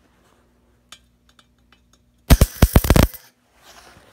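Gas-shielded MIG arc from a Lincoln Weld Pak 155 laying one short tack weld: a loud, sputtering crackle lasting under a second, starting a little past the middle, with a few faint clicks before it. The welder has remarked that it sounds like it is running a little hot, with the gas, wire feed and amperage not yet adjusted.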